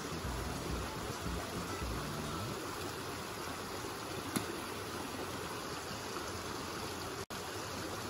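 Small, fast woodland stream running over rocks, a steady rush of water, with a single sharp click about four and a half seconds in.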